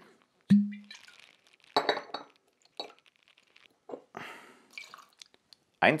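Glass and metal bar tools clinking as gin is measured with a jigger into a cocktail shaker: a sharp clink with a brief ring about half a second in, then several softer clinks and a little pouring liquid.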